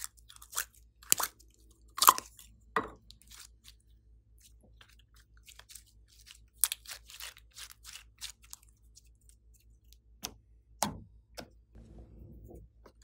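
Thick pink slime worked by hand: pulled from its tub and squeezed, giving sticky pops and crackles, loudest about two seconds in and again near the end, with a quieter stretch in the middle.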